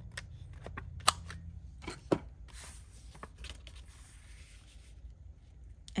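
Handheld corner rounder punch clicking as it is squeezed through notepad paper, two sharp clicks about a second apart, with light clicks and paper rustling as the page is handled.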